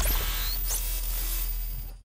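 Electronic logo sting: a noisy whoosh with sweeping glides over a deep rumble, cutting off abruptly at the end.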